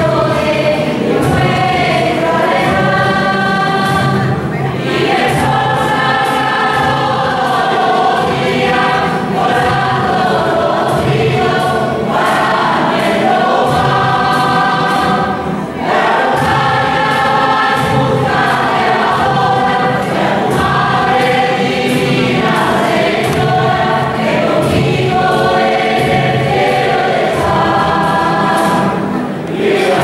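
Choir singing a hymn, with short breaks between phrases about halfway through and again near the end.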